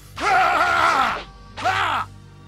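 A man's voice giving effort shouts of 'hah' as a cartoon character throws punches: a long shout, then a short one near the end, over a low music bed.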